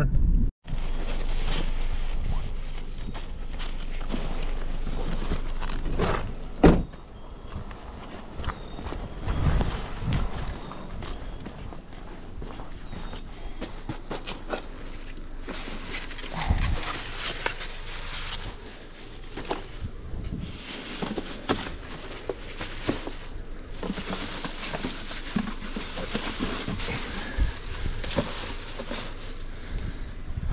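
Footsteps and the handling of plastic grocery bags: a sharp thump about a quarter of the way in, then long stretches of bags rustling and crinkling as they are set down.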